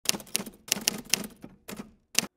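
Typewriter keystroke sound effect: a quick, uneven run of about eight sharp key clacks, paired with on-screen text typing out, dying away near the end.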